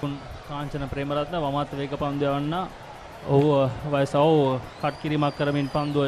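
Speech only: a man's voice commentating with short pauses between phrases.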